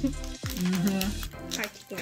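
Plastic wrapper crinkling as it is worked open by hand, over background music.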